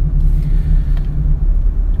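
Steady low rumble of road and engine noise inside the cabin of a moving Lexus car.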